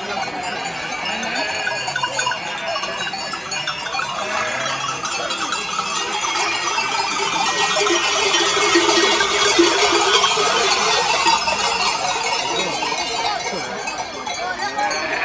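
Many neck bells on a running flock of sheep, clanking and jangling together without a break. The sound grows louder around the middle.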